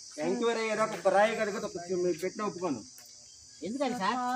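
People talking over a steady, high-pitched insect drone that runs without a break; the talking stops briefly about three seconds in, leaving only the insects.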